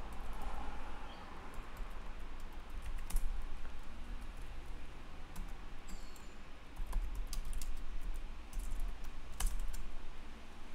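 Typing on a computer keyboard: irregular keystroke clicks in short runs with pauses between them.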